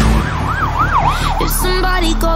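A siren effect in a pop song's mix: a wailing tone that swings up and down about four times over the sustained backing, before the singing comes back in near the end.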